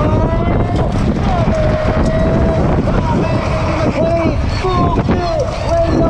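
Wind buffeting a helmet-mounted camera's microphone as a BMX bike races along the dirt track, a steady rumbling rush. Through it, a race announcer's voice comes over the public-address system.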